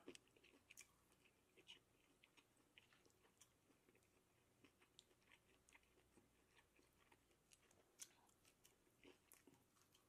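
Faint, sporadic mouth clicks and soft chewing from someone eating shrimp and grits, very quiet, with one slightly louder click about eight seconds in.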